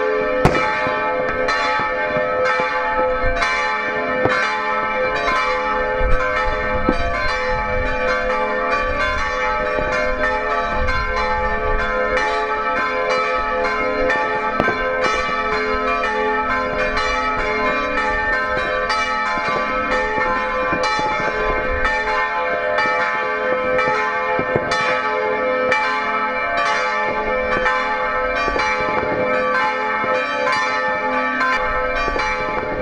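Several church bells ringing together in a continuous full peal, with many overlapping strikes in an even rhythm. This is the traditional peal rung to mark the New Year.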